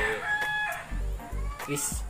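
A rooster crowing: a short, held, pitched call.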